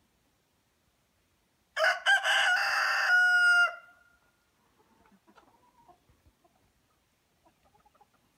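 A rooster crowing once, a single cock-a-doodle-doo about two seconds long that starts about two seconds in and ends on a held note that trails off.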